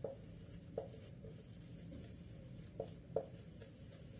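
Marker pen writing on a whiteboard, faint, with a few short taps as the tip meets the board.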